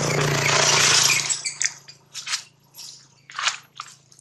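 A macaque biting and chewing a small green fruit, heard close up: a loud rustling noise for about the first second, then a run of short, separate crunches about every half second.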